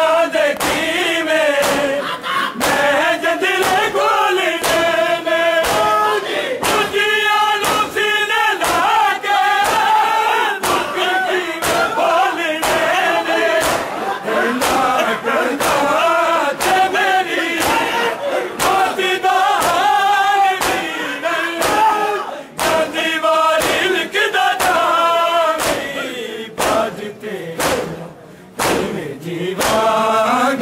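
A crowd of men chanting a Punjabi nauha in unison, over a steady beat of hands slapping bare chests in matam. The chanting thins out briefly near the end.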